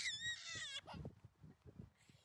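A toddler's high-pitched squeal trailing off in the first half second, followed by faint low thumps and near quiet.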